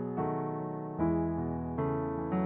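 Keyboard music: slow, sustained chords over a low bass note, with a new chord struck about every second.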